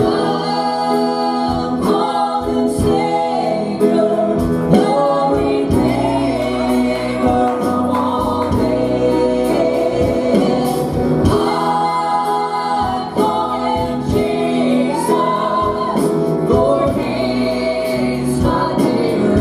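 Two women singing a gospel song together into microphones, with live piano and guitar accompaniment.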